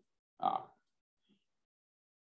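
A single brief, non-word vocal sound from the presenter's voice about half a second in, a short grunt-like utterance between sentences.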